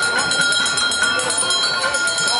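A small metal bell rung rapidly and continuously, giving a steady bright ringing, with voices of passers-by faintly behind it.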